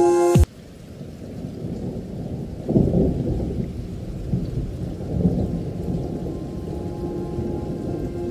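Background music cuts off half a second in, giving way to a low rumbling outdoor noise that swells about three seconds in and again around five seconds. The music returns faintly near the end.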